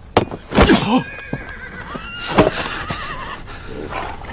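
A horse whinnying, its call a high, wavering, trembling pitch, with two loud sudden rushes of sound, one near the start and one about halfway through.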